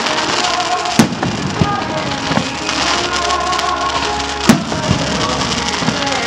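Fireworks display: aerial shells bursting with sharp bangs over a steady crackle, the two loudest bangs about a second in and past the middle, with several smaller reports between. Music plays underneath.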